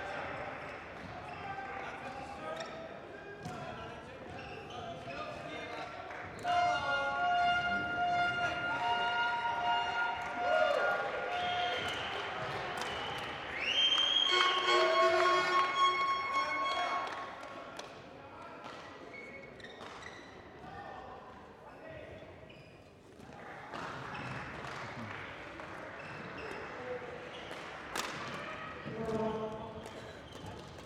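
Badminton warm-up in a sports hall: repeated sharp racket strikes on the shuttlecock and footfalls on the court over a murmur of voices from the hall. For about ten seconds in the middle, music rises above it, then fades.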